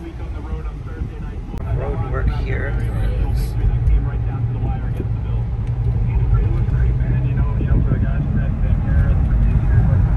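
Road and engine noise heard inside a moving car's cabin: a steady low rumble that grows louder a couple of seconds in as the car gets going.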